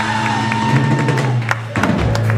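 Live rock band playing an instrumental passage: electric bass holding low notes under drum hits and cymbal crashes, with electric guitar and keyboard.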